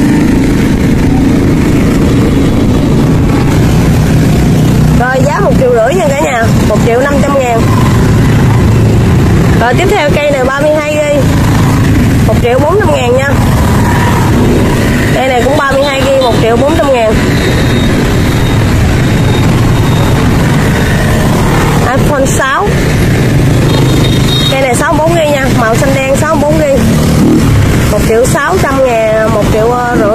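A steady low mechanical rumble runs throughout. Indistinct voices come and go over it in short stretches.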